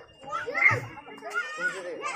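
Children's voices calling and chattering, mixed with people talking, with the loudest call a little past half a second in.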